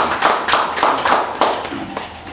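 A small group of people clapping: a short burst of applause that dies away near the end.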